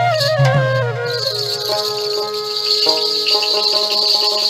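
Instrumental Rajbanshi folk band music: a melody slides downward over drum beats, then about a second in the drums drop out and a steady high rattle continues under sustained held notes.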